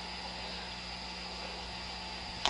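Steady hiss with a faint, high-pitched steady tone and a low hum underneath, with no distinct events.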